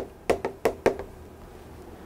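Chalk knocking against a blackboard while a word is written, about five sharp taps in the first second.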